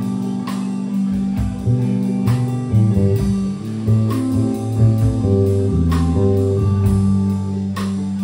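A live band of electric guitar, bass guitar and drum kit playing a slow piece: sustained guitar chords over a bass line, with cymbal strokes about every two seconds.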